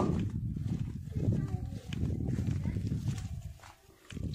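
Footsteps in sandals on dry, stony soil under a heavy low rumble on the microphone, fading out shortly before the end.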